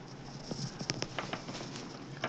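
Computer mouse clicking: about half a dozen sharp clicks in quick succession, starting about half a second in.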